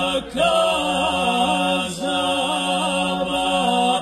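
Male voices singing unaccompanied in the Krajina 'na bas' style (ojkača): a held low bass note under a wavering upper voice line. There is a short break for breath just after the start, and the voices cut off together near the end.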